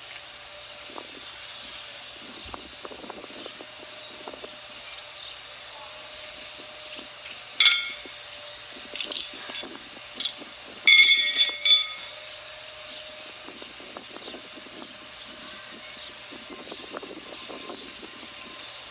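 Steel pitching horseshoes clanking and ringing against each other as they are gathered from the pit. One sharp clang comes about seven seconds in, then a few light clinks, then a quick run of loud clanks near the middle.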